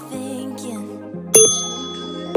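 Background music with one bright, ringing ding about two-thirds of the way in: a countdown beep from the workout's interval timer.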